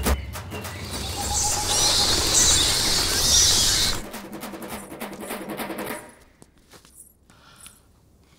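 Film sound effect of a flock of bats bursting out of a tree: a dense flutter of wings with high chirps, loudest in the first half, dying away to near quiet after about six seconds.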